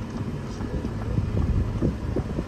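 Steady low rumble of a car driving along a mountain road, heard from inside the car, with wind buffeting the microphone.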